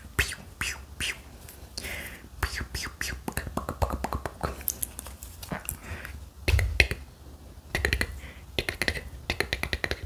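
Fast, chaotic close-up ASMR sounds: breathy whispered mouth noises mixed with many quick clicks and taps.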